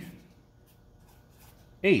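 Faint felt-tip marker rubbing on paper as small numbers are written. A man's voice trails off at the start and speaks again near the end.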